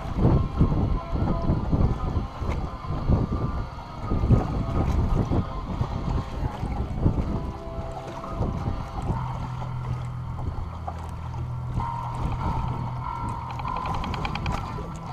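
Wind buffeting the microphone of a camera aboard a small boat on choppy water, in uneven gusts. The gusts ease about halfway through, and a steady low hum comes in.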